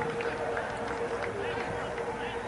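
Indistinct shouting and calling from several people at a football match, none of it clear words, over a steady hum.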